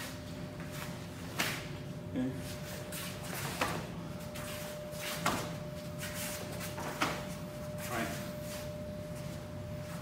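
Several sharp slaps and thuds, a second or two apart, of forearms striking arms as punches are blocked and parried in a martial-arts blocking drill.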